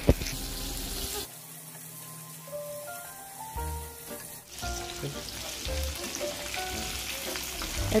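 Maida-coated chicken lollipop pieces deep-frying in hot oil, sizzling steadily, with a sharp click right at the start. The sizzle drops quieter about a second in and comes back up after a few seconds.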